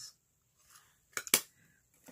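Two quick, sharp clicks a little over a second in, from a plastic eyeshadow palette case being handled and set down.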